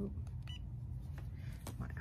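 Faint clicks and a brief high beep about half a second in from a Cricut EasyPress Mini iron, as its heat setting is adjusted because the iron was getting too hot, over a steady low hum.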